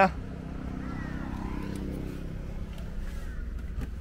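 Car engine idling: a low steady hum.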